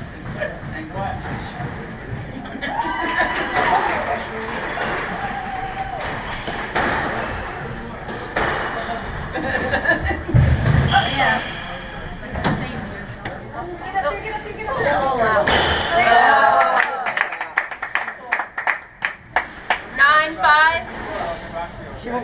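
Squash rally: sharp knocks of racquet strikes and the ball hitting the court walls, with a quick run of hits in the last few seconds.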